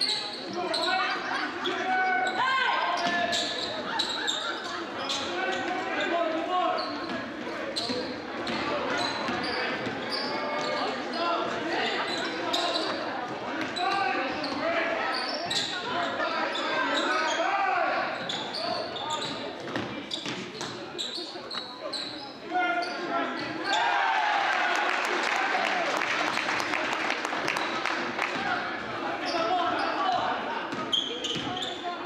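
Basketball game in a large, echoing gym: the ball bouncing on a hardwood court among the shouts and chatter of players and spectators. Near the end the crowd cheers and claps after a home three-pointer.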